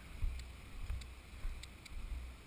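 Wind buffeting on a helmet camera's microphone, an uneven low rumble, with a few faint sharp clicks.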